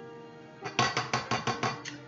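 A quick run of about eight light, evenly spaced taps, a cup knocked against the rim of a stainless steel mixer bowl to shake the last of the dry ingredients out. Soft background music plays underneath.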